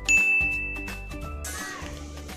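A single high-pitched ding sound effect that rings for just over a second, laid over background music; a short swishing noise follows near the end.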